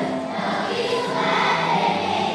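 Large children's choir singing together, held notes moving from one to the next.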